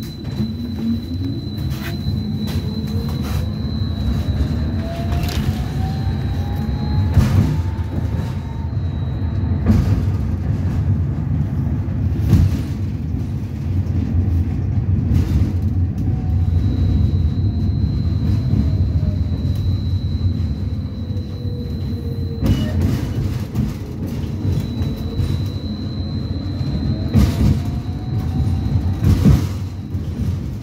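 Belkommunmash BKM 802E tram's electric traction drive whining as it pulls away from a stop, the pitch climbing as it gathers speed over the first nine seconds or so, sinking again as it eases off in the middle, and climbing once more near the end, with a thin steady whistle coming and going above it. Under it runs a heavy rolling rumble of the wheels on the rails, broken by occasional sharp knocks.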